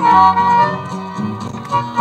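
Bolivian folk music from a cassette recording: charango, accordion and saxophone playing a melody over a steady beat.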